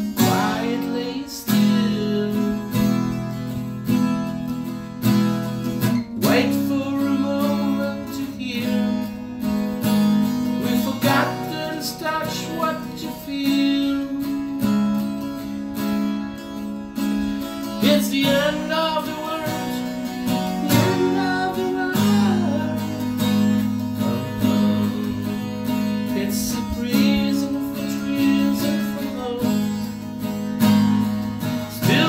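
Steel-string acoustic guitar strummed and picked in an instrumental stretch of a slow song, its chords held and changing every few seconds.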